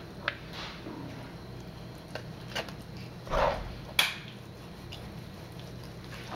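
Kitchen knife trimming fat from raw pork spare ribs on a paper-covered cutting board: a few soft knocks of the blade, a duller bump just over three seconds in, and one sharp click about four seconds in.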